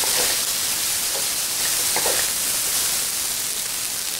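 Green beans sizzling as they fry in rendered bacon fat in an electric wok, a steady hiss, with a few short scrapes of a wooden spatula stirring them.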